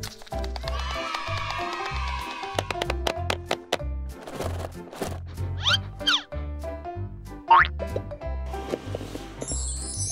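Playful children's-style background music with a steady bass beat about twice a second, overlaid with cartoon sound effects: quick whistle-like pitch glides about six seconds in and again a second and a half later, and a high shimmering sparkle near the end.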